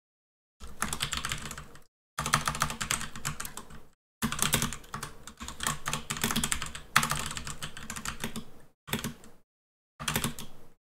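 Fast typing on a computer keyboard: runs of rapid keystrokes a second or more long, broken by short pauses that drop to dead silence.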